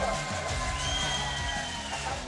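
Background music with a steady, blocky bass line and a high held note about a second in, over faint arena crowd noise.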